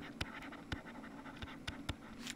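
Faint scratching and a few light ticks from a stylus writing a word, over a low steady hum.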